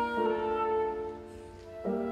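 Concert flute and grand piano playing a slow instrumental passage: a held note fades away through the middle, and a new note enters shortly before the end.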